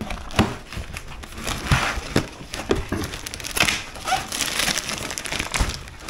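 Cardboard packaging being opened by hand and a plastic-wrapped case pulled out: irregular crinkling of the plastic wrap mixed with scrapes and small knocks of the box.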